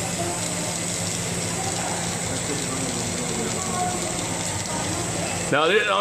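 Lampworking bench torch flame burning with a steady hiss, over a low steady hum.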